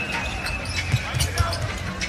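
Basketball dribbled on a hardwood court, several low bounces from about a second in, over steady arena background noise.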